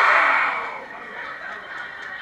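A sudden loud burst of many voices at once, a group shouting or cheering, that dies down over about a second and carries on more quietly.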